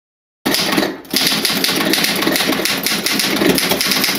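Title-sequence sound effect of rapid, dense clattering clicks, starting abruptly after a brief moment of silence, with a short dip about a second in.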